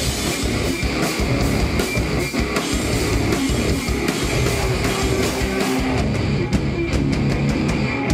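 Live grunge rock band playing loud, distorted electric guitars, bass guitar and drum kit. About six seconds in, the dense wash thins, leaving separate sharp hits.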